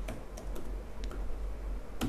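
Typing on a computer keyboard: a few light, irregularly spaced keystrokes.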